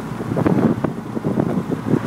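Cab noise of a GMC Sierra pickup being driven, an irregular mix of road and engine noise with wind buffeting the microphone.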